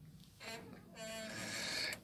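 A faint human voice, quieter than the interview speech around it, comes after a brief near-silent pause: a short sound about half a second in, then a longer one from about a second in.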